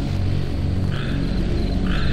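Dark ambient swamp soundscape: a low bass drone under steady cricket chirping, with frogs croaking twice, about a second apart.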